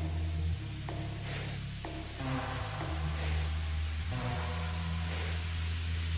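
Electronic music in a quiet passage: sustained low bass notes shifting every second or two, with soft hiss swells and faint ticks about once a second.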